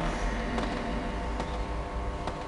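A steady hum made of several held tones over a low rumble, with a few faint clicks, about one every second.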